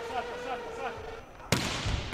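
A volleyball bounced once on the hard indoor court floor by the server before the serve: a single sharp slap about one and a half seconds in, ringing briefly in the large hall. Before it there is a faint held tone and distant voices.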